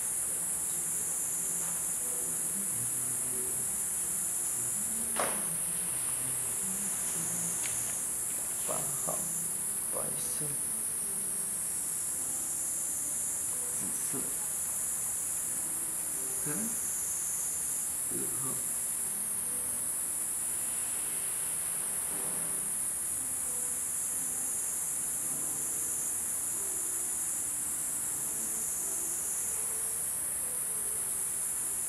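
A steady, high-pitched insect chorus that swells and fades slowly in loudness throughout. A sharp click comes about five seconds in, and a few fainter clicks follow a few seconds later.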